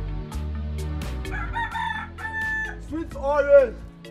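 A rooster crowing in the second half over background music with a steady beat; the loudest crow comes near the end, rising and then falling in pitch.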